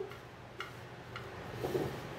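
Scissors snipping fusible paper: three light clicks about half a second apart, with a soft low sound near the end.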